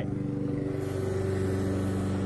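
Small compressor motor of a cordless airbrush sprayer running, a steady even hum.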